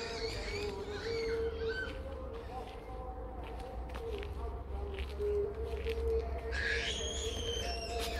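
Quran recitation played over loudspeakers, heard at a distance as a continuous wavering chant that holds long notes. Birds chirp over it at the start and again near the end.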